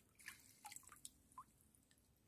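Faint drips and small splashes of water from a fishing net being lifted by hand out of shallow water, with a few quick droplet plinks in the first second and a half.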